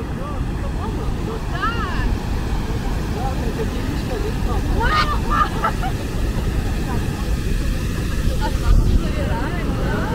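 Wind buffeting the microphone as a steady low rumble, with brief snatches of people's voices about two seconds and five seconds in.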